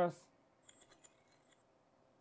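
Faint, brief glassy tinkling from the 'glass transformation' transition sound effect, lasting about a second, with a few light ticks.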